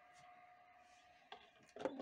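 Very quiet, with a faint steady tone under it, then a single light click a little past the middle as the clear plastic dome lid is set back onto a small egg incubator.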